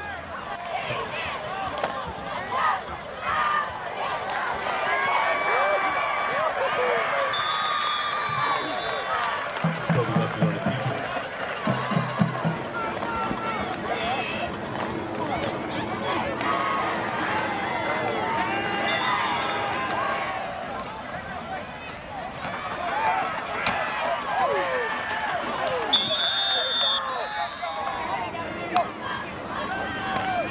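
Football game crowd and sideline noise: many voices shouting and cheering at once, with a short shrill referee's whistle near the end.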